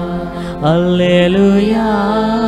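A man singing a worship song in long, held notes that slide between pitches, with his own electronic keyboard accompaniment on a Roland XPS keyboard.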